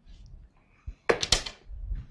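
A large sheet of paper slid across a tabletop, rustling loudest in a short burst about a second in.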